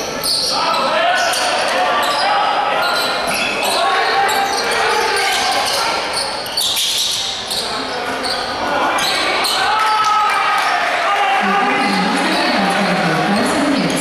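Basketball game sound in a large hall: spectators shouting and calling, with a basketball bouncing on the court floor. The crowd voices swell in the last few seconds.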